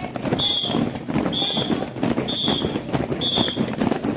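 A whistle blown in short blasts about once a second, keeping the marching step, over the footsteps of many children marching on a concrete street.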